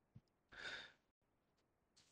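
Near silence broken by one short breath, about half a second in, with a faint click just before it.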